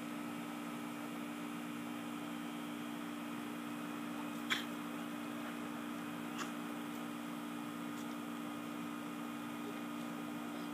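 Steady background hiss with a faint hum, broken by a brief click about four and a half seconds in and a fainter one about two seconds later.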